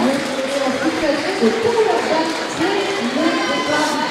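Voices in a large sports hall: overlapping background chatter of skaters and people around the track, with one brief "oui" from a commentator.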